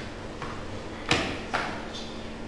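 Two short clattering noises about half a second apart, the first the louder, over a steady low hum.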